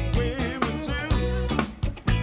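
Live funk band playing, with drum kit, electric bass and guitar, and a sung lead vocal over them.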